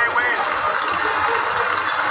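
Indistinct voices over a steady background noise.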